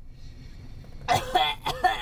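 A person coughing, a sudden loud burst about a second in, running on into a short voiced splutter.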